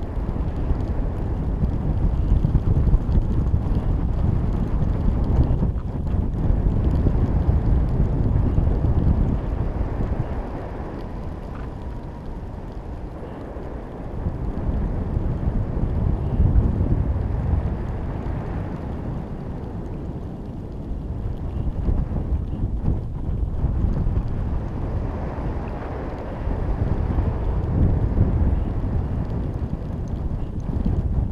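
Wind buffeting the microphone of a camera hanging beneath a high-altitude balloon in flight: a low, noisy rush that swells and eases several times.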